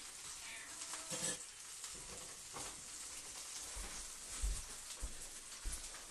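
Trout fillets frying skin-side down in a hot pan, a steady sizzle as the heat comes back up to re-crisp the skin. A few light knocks and low bumps of pan handling in the second half.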